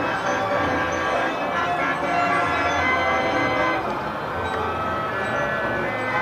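Bell-like chiming music from miniature fairground ride models, a tinkling tune of many overlapping notes playing on steadily.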